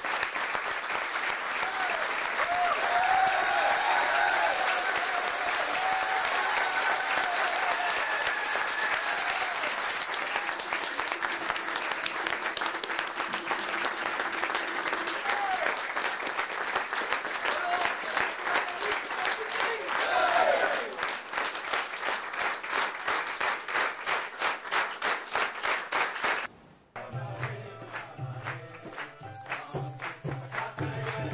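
A roomful of people applauding, with voices calling out over the clapping. About twenty seconds in, the clapping settles into a steady beat of roughly two claps a second. Near the end it cuts off suddenly and music with a steady beat begins.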